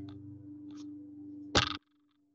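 A steady low hum with a faint held tone, broken about a second and a half in by one short, loud bump, likely from handling the sketchbook, after which the sound cuts out almost completely.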